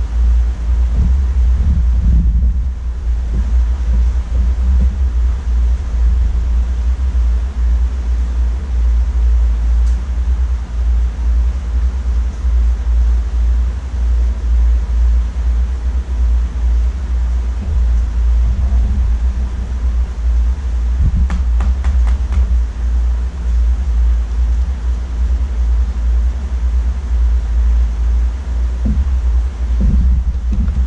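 Steady low rumble and hum of a large aquarium's water pump and aeration, with faint bubbling above it and a few light ticks about a third of the way in and again past the middle.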